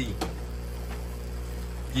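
Aquarium filter or pump equipment humming steadily, with water moving, and a faint click just after the start.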